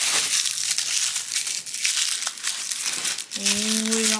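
Tissue paper crinkling and rustling continuously as hands unwrap a small toy accessory from it. A voice starts near the end.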